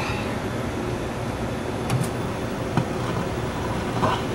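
Steady background noise, with a pair of sharp clicks about two seconds in and a fainter click a little later, from the knob of a 1975 Motorola Quasar tube television being switched on.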